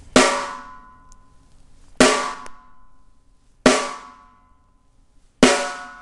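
Snare drum struck four times with single whipping downstrokes of the Moeller technique, about 1.8 seconds apart, each stroke left to ring out.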